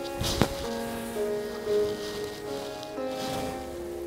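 Background Indian classical sitar music, with held notes over a steady drone.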